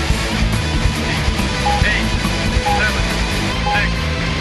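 Industrial rock track with guitar and programmed loops playing at full level, with a short electronic beep repeating about once a second.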